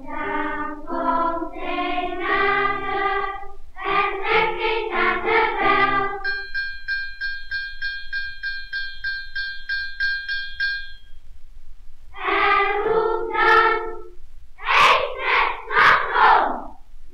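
Children's choir singing on an old 78 rpm record. For about five seconds in the middle the voices stop and a small bell rings one note quickly and evenly, about three or four strikes a second, like an ice-cream man's bell. The choir then comes back in, louder near the end.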